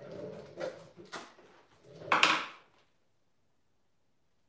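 Paint jars and containers being handled on a worktable: a few knocks and scrapes over the first couple of seconds, the loudest just after two seconds.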